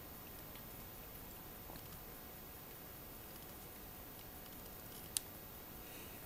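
Faint room hiss while plastic model-kit sprues are handled close to the microphone, with a single sharp click about five seconds in.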